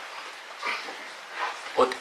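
A pause in a man's speech: low steady hiss of a small room, with a brief faint sound a little way in. His speech starts again near the end.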